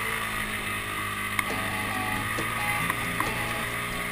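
ATV engine running steadily as the quad rides along a snowy trail, with a few sharp knocks from the machine over the bumps.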